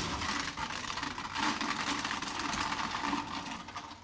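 A small machine running with a fast, continuous clatter of fine ticks, fading out near the end.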